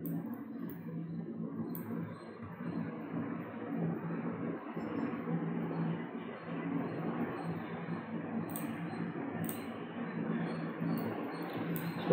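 Steady low hum and hiss of background noise, with a few faint mouse clicks scattered through it.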